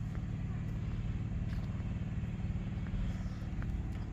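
A vehicle engine idles nearby, giving a steady low hum.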